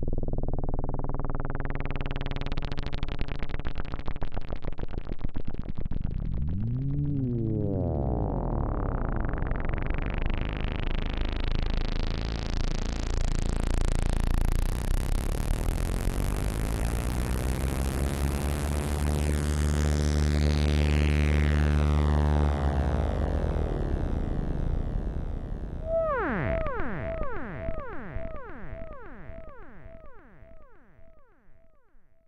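Moog System 55 modular synthesizer: a low sustained oscillator tone through its resonant low-pass filter, the cutoff swept slowly up and down several times so the sound goes from dull to bright and back, and through a delay. Near the end a short resonant chirp falling in pitch repeats about twice a second as fading delay echoes.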